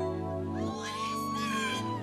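Live band music: sustained electric keyboard chords over a bass line. Under a second in, a high, bending lead note enters and is held.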